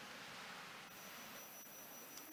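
Faint church room noise with soft rustling and shuffling as the congregation rises from the pews. A thin, steady high-pitched tone starts about a second in.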